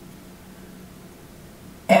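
Quiet room tone with a faint steady low hum, then a woman's voice starting up at the very end.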